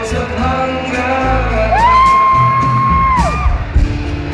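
Live acoustic pop band playing, with acoustic guitar, bass and drums, recorded on a phone's microphone near the stage. In the middle a single long high voice note is held for about a second and a half, sliding up into it and dropping away at its end.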